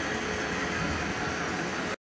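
Steady, even hum and hiss of background noise with no distinct events, cutting off suddenly at the end.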